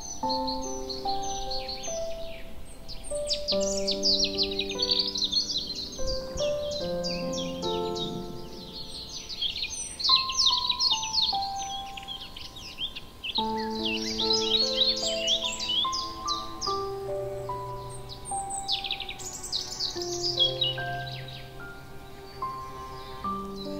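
Gentle piano music with songbirds chirping and trilling over it, the birdsong coming in busy flurries.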